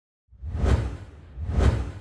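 Two whoosh sound effects about a second apart, each swelling and falling away with a deep low end, the second trailing off into a faint fade.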